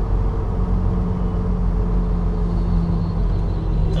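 Volvo semi truck's diesel engine running as the truck rolls along: a steady, even low drone.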